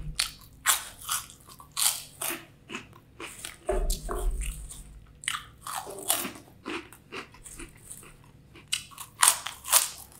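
Close-miked biting and chewing of crunchy corn-puff snacks: sharp, irregular crunches with short pauses between bites. The crunches come loudest and thickest near the end, with a brief low bump about four seconds in.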